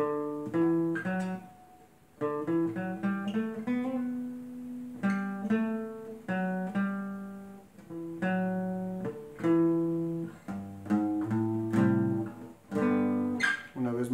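Acoustic guitar played alone: picked single-note runs mixed with short chords in the key of G, each note struck separately and left to ring. There is a brief pause about two seconds in.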